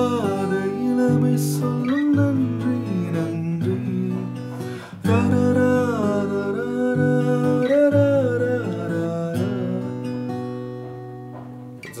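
Acoustic guitar chords played with a man singing a melody over them. A new chord is struck about five seconds in and rings out, fading near the end.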